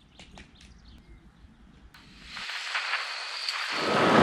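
A few faint ticks over quiet outdoor ambience. About halfway in, a rush of wind on the microphone of a bike-mounted camera rises and becomes loud near the end as the bicycle rides along the road.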